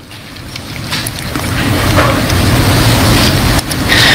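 Audience applauding, swelling over the first second or two into a steady, dense rush.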